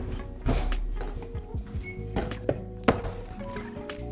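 Background music plays over kitchen knocks. The loudest is a heavy thunk about half a second in, an oven door shutting on the cupcake pan. Several lighter clatters follow later.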